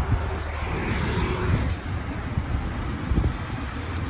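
Wind buffeting the phone's microphone, with a low irregular rumble.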